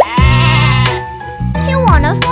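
A cartoon lamb bleating a wavering "baa", held for about a second, over children's background music.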